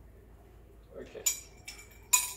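Sharp clinks of metal and ceramic coffee-making gear being handled on a kitchen counter, two of them in the second half after a quiet start.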